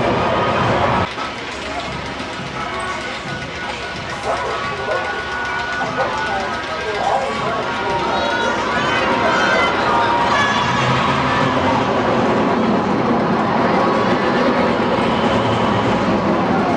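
Steel looping roller coaster train running along its track, its roar building from about halfway as it comes into the loops, with people's voices mixed in.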